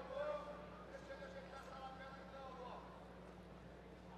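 Faint voices calling out with drawn-out vowels, too indistinct to make out words, over a steady low hum. The calling stops about three seconds in.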